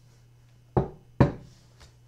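A tarot card deck knocked against a tabletop: two sharp taps about half a second apart, then a faint third.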